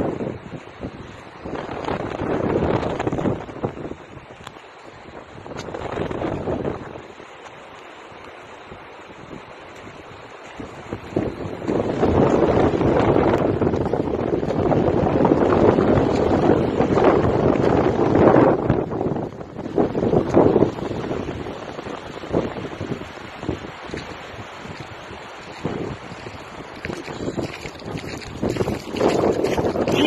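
Gusting wind buffeting a phone microphone on an open shore, coming and going in swells and strongest in the middle stretch, with small waves washing onto the sand behind it.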